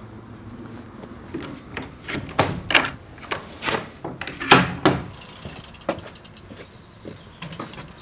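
Metal latch on a wooden door clacking and rattling as it is worked open, a run of sharp clicks and knocks, the loudest about halfway through.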